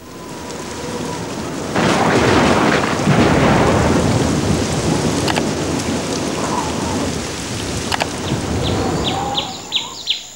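Thunderstorm sound effect: steady rain with thunder, swelling louder about two seconds in, with a few sharp cracks. Near the end the rain thins and short high chirps come in.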